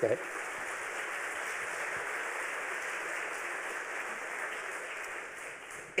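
Audience applause from a full lecture hall: steady clapping that eases off slightly near the end.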